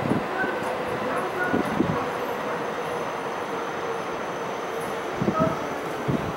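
Train cars rolling slowly through the depot tracks: steady rolling noise with a few heavy wheel clunks over rail joints and points. The cars are a 651 series EMU being shunted by a diesel locomotive.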